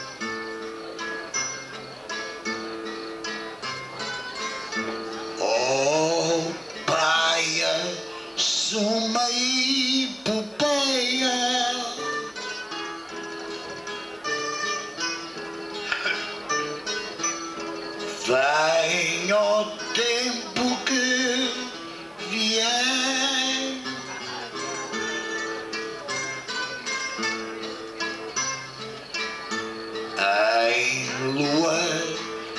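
Azorean cantoria: a man sings improvised verse lines over a steady picked and strummed accompaniment of two guitars. The singing comes in two spells, about five seconds in and again around eighteen seconds, with the guitars carrying on alone between them.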